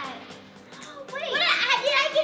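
Background music, then a young girl's loud, high-pitched excited shout starting a little after a second in.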